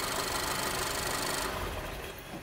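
Car engine idling, then dying away about one and a half seconds in: a direct 5-volt feed on the crankshaft speed sensor's signal line has cost the engine control unit its synchronization, so the engine stalls.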